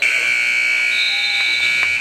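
Gym scoreboard buzzer sounding one loud, steady, high-pitched blast that starts suddenly and cuts off after about two seconds: the game clock has run out in the fourth period, ending the game.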